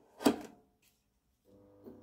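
Faint buzzing mains hum from a fluorescent fitting's ballast and glow starter as a Mazdafluor 36 W tube is switched on and preheats. It starts about a second and a half in, with a brief louder pulse near the end.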